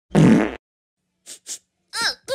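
Cartoon fart sound effect: one short, low burst lasting about half a second, followed by two faint short blips.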